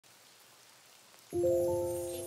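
A faint steady hiss, then about a second and a half in a piano chord is struck and rings on, slowly fading: the first chord of a lo-fi piano arrangement.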